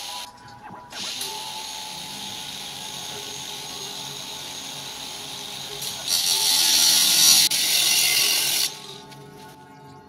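Handheld power tool running steadily, then a louder, harsher grinding on metal for about three seconds from six seconds in.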